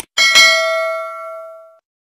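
Notification-bell sound effect of a subscribe-button animation: a click, then a bright chime struck twice in quick succession that rings and fades, cutting off shortly before the end.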